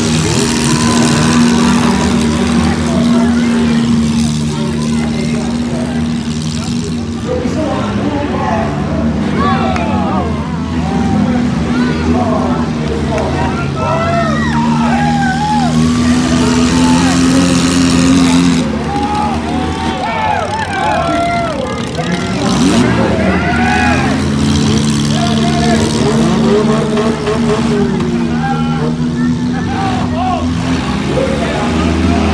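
Several demolition derby cars' engines running and revving together in a steady drone, dipping briefly about two-thirds of the way through, with voices shouting and talking over it from about a quarter of the way in.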